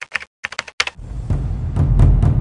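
A quick run of computer-keyboard keystroke clicks, a typing sound effect. About a second in, intro music with heavy bass and drum hits starts.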